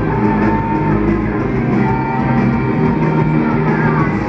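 Live rock band playing loud through a PA, with electric guitars, bass and drums, heard from the audience floor.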